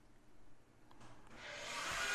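Air compressor starting up about a second in: a steady motor noise that grows louder.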